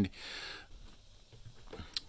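A man's short breath in the first half-second, then faint room tone with a small click near the end.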